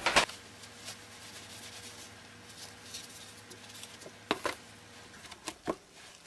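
Faint rustling and light scraping as dry loose-fill cellulose paper insulation is handled and dropped by hand into a bowl of wet paper clay, with a few sharp clicks near the end.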